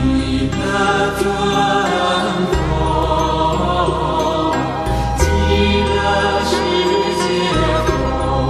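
Buddhist devotional music with mantra chanting over sustained accompaniment, the bass note changing every couple of seconds and a few sharp strikes ringing through.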